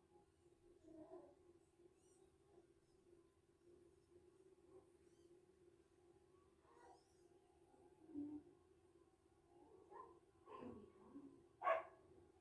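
Near silence: a faint steady room hum with a few soft, brief sounds, and a short high squeak just before the end.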